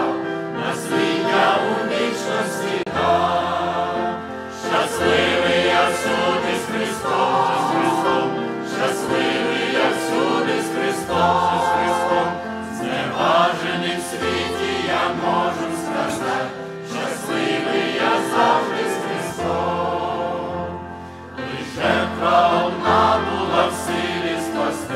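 Mixed choir of men and women singing a hymn, accompanied by grand piano.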